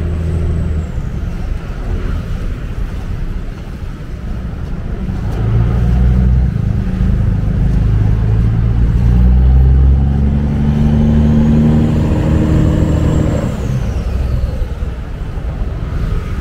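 Road traffic on a bridge: a steady rumble, over which one vehicle's engine grows louder from about five seconds in, rises in pitch and fades away near the end.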